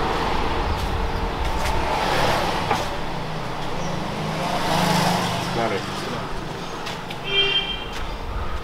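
Outdoor street sound: traffic noise with a vehicle's low rumble passing early on, a brief voice in the middle, and a short high-pitched chirp near the end.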